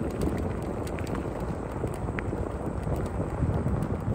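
Wind rumbling on the microphone over the rolling noise of a Ninebot self-balancing scooter's small tyres on rough, cracked asphalt, with occasional light ticks.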